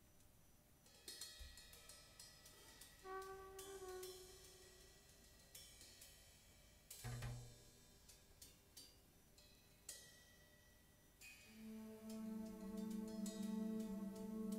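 Sparse, quiet free-form jam: scattered drum and cymbal hits with ringing tails and a few short brass notes, then about 11 seconds in a brass instrument starts a held note that swells louder.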